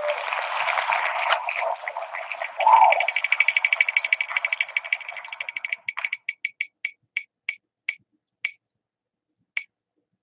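An online spinning name-wheel ticking through a phone's speaker as the wheel spins: a steady hiss at first, then a fast run of ticks that slow and spread out as the wheel comes to rest, the last tick near the end.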